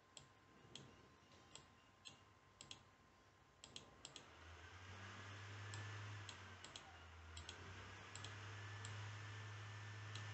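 Faint, sharp computer mouse clicks, about fifteen at irregular intervals, over near silence. A steady low hum comes in about halfway through.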